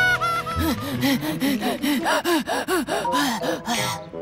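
A cartoon cat character panting hard in quick gasping breaths, about four a second, out of breath from running. At the very start there is a short falling whistle.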